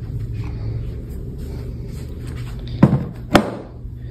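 Two sharp knocks about half a second apart near the end, over a steady low rumble of handling noise as objects and the phone are moved about.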